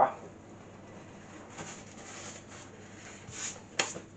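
Flour being tipped from a folded sheet of paper into a glass mixing bowl: faint soft rustling of the paper, with one sharp tap near the end.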